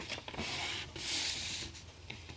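A sheet of paper rubbing on a tabletop as hands smooth and press a fold flat, in two strokes of soft hissing friction, each lasting about half a second to a second.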